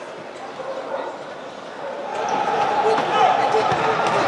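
Indistinct voices shouting and calling in an indoor futsal hall, growing louder about halfway through.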